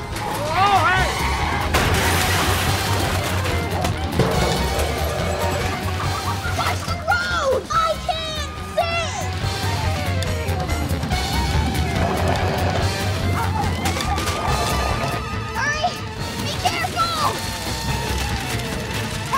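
Film soundtrack mix: comedic score music under crashes and clattering as a soapbox cart smashes through metal trash cans and newspapers, with shouting voices.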